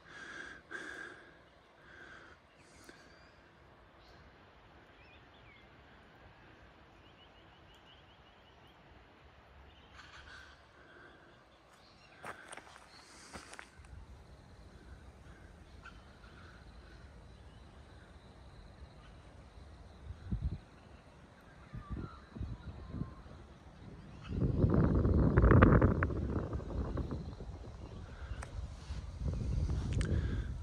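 Cockatoos calling intermittently in the distance, faint harsh screeches over a quiet background. Later a low rumble starts, and near the end there is a loud low rushing noise lasting a few seconds.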